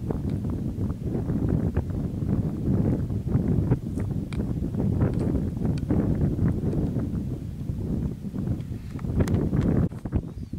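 Wind buffeting the microphone: a continuous, uneven low rumble, with scattered light clicks and taps throughout.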